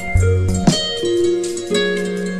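Background music: held melodic notes over a low, repeating beat.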